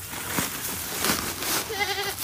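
A goat bleating once near the end, a short wavering call, over a crackly rustling background.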